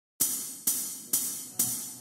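Four evenly spaced hi-hat strikes, about half a second apart, each ringing briefly and fading, opening a music track.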